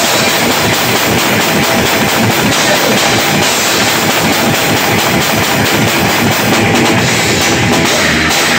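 Live rock band playing loud, heard from right beside the drum kit: dense, fast drumming with crashing cymbals over the band.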